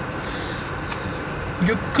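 Steady in-cabin road and running noise of a Honda Fit Hybrid cruising slowly at about 40 km/h, an even hum with no distinct engine note or revving.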